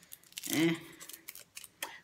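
A few small dry clicks and ticks as a makeup brush is handled in the fingers, scattered mostly through the second half, around a short spoken 'eh'.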